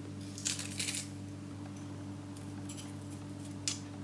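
Light metallic clicks and scrapes from a stainless garlic press and a spoon as crushed garlic is worked off into a cup of sour cream, loudest about half a second in with one more brief scrape near the end.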